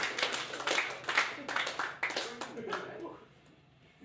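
Small audience clapping and shouting as a song ends, dying away about three seconds in.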